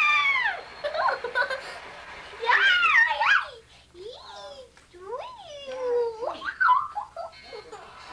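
A young girl giggling and squealing, her high voice sliding up and down in several short spells with brief pauses between.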